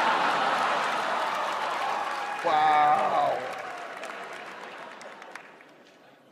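Studio audience laughing and applauding, slowly dying away over several seconds. One voice briefly rises above the crowd about halfway through, falling in pitch.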